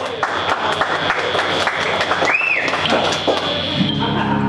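Audience applauding in a club between songs, with one short high rising-and-falling call from the crowd about two and a half seconds in. Near the end the upright bass and electric guitar come in as the next tune starts.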